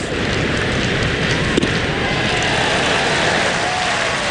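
Steady noise of a ballpark crowd, with one sharp pop about a second and a half in.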